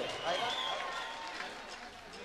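Faint, indistinct voices of people talking in a hall, trailing off and growing quieter.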